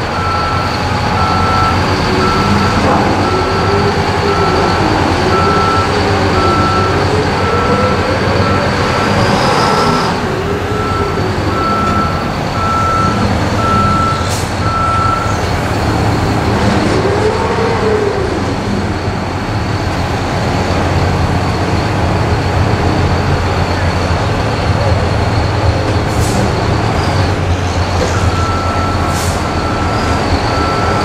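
Heavy forklift engines running while they pull a locomotive onto a flat car, with a reversing alarm beeping about once a second that stops about halfway and starts again near the end. A lower sound rises and falls in pitch a few times in the first third.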